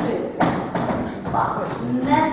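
Women's voices speaking lines in a stage play, with a single thump about half a second in.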